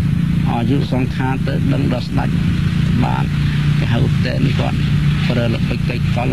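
A man speaking Khmer in a Buddhist dhamma talk, talking continuously over a steady low hum.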